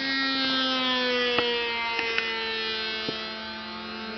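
Radio-controlled model airplane's motor buzzing in flight, a steady high drone whose pitch slowly falls. A few faint clicks come through as well.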